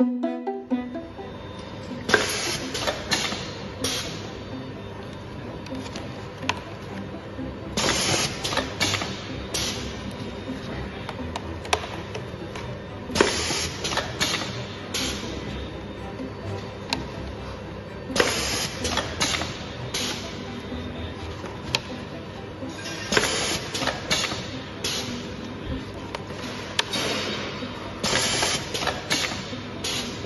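Volumetric pasta depositor cycling: over a steady machine hum, a burst of clicks and noise lasting about two seconds comes about every five seconds as each portion is deposited.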